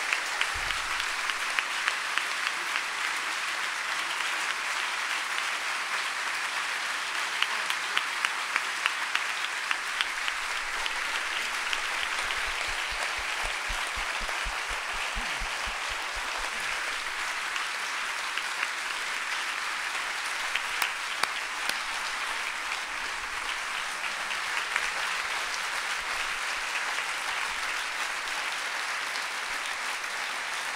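A large audience applauding, a dense, even clatter of many hands with a few sharper individual claps standing out.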